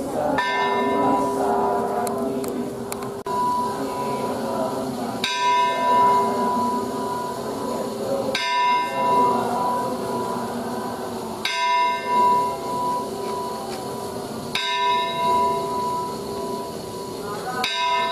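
A temple bell struck six times, about every three seconds, each stroke ringing on over a low murmur of crowd voices.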